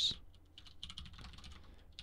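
Computer keyboard being typed on: a short run of faint, irregular keystrokes.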